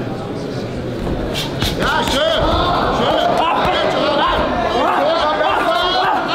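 Crowd of spectators yelling and cheering, swelling about two seconds in, with a couple of sharp smacks just before.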